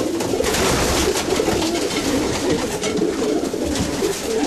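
Racing pigeons cooing: many birds at once in a steady, overlapping chorus, with brief rustling noises now and then.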